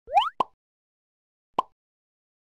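Edited-in sound effect: a quick rising swoop followed by two short pops about a second apart.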